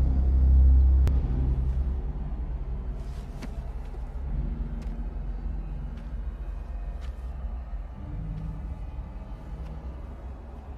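Film soundtrack's low rumbling drone, loud at first and fading over the first two seconds into a quieter hum with a few faint held tones, broken by a few scattered faint clicks.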